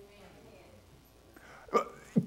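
A pause in a man's speech: low room tone, then one short, sharp sound from his voice, a breath or clipped syllable, near the end before he speaks again.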